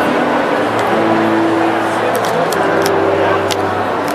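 Live MPB performance: a man's voice singing long held low notes over nylon-string acoustic guitar, the pitch moving twice. A few short sharp clicks sound in the second half.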